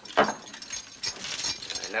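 Metal wrist shackles being unlocked and worked open: a sharp metallic click about a quarter second in, then lighter clicking and rattling of the lock and cuffs.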